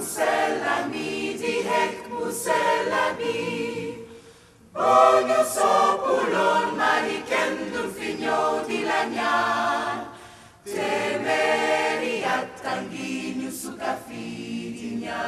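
Large gospel choir singing together in three loud phrases. Each phrase is cut off cleanly, with brief pauses about four and ten seconds in.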